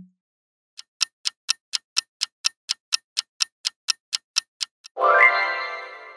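Clock-like countdown ticking sound effect, about four ticks a second for some four seconds, followed by a reveal sound effect that sweeps quickly up in pitch and rings out, fading slowly.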